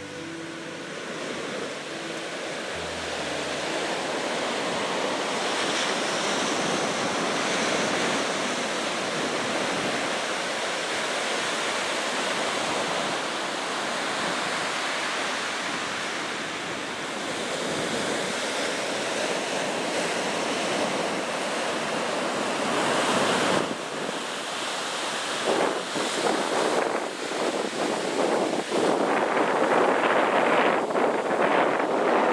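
Pacific surf breaking and washing up a sand beach, a continuous rush of waves. Wind buffets the microphone in uneven gusts over the last several seconds.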